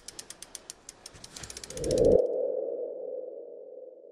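Sound effects of an animated logo sting: a run of quick, sharp ticks that speeds up, then a single tone that swells about two seconds in and slowly fades away.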